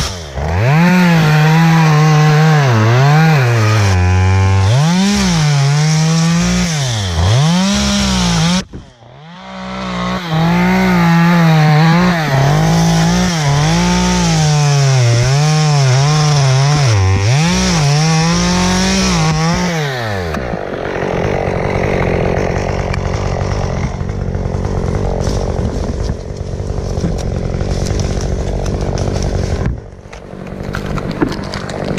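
Stihl MS 193 T two-stroke top-handle chainsaw cutting palm fronds, its engine pitch rising and falling again and again as the throttle is worked under load, with a brief break a little under a third of the way in. For the last third the revving stops and a rougher, steadier noise remains.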